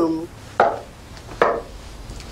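Two knocks on a wooden door, a little under a second apart.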